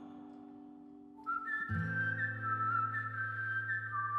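Song outro: a ringing chord fades away, then about a second in a whistled melody starts over a sustained low chord.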